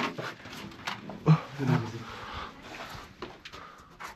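A man grunting and breathing hard with effort as he hauls himself up through a hole in a concrete bunker roof, with a short exclamation about a second in.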